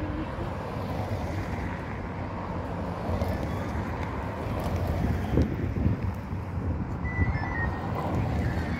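Race support cars driving past one after another, engine and tyre noise on a brick-paved street, with wind buffeting the microphone.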